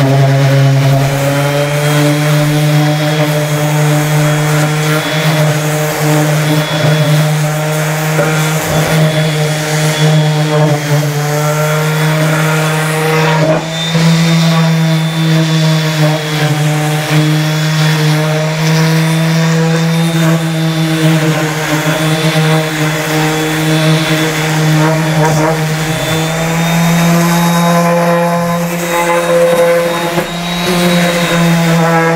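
Electric random orbital sander with 80-grit paper running continuously on a plywood panel, sanding down torn-up face veneer. A steady motor hum whose pitch wavers slightly as the sander is moved across the board.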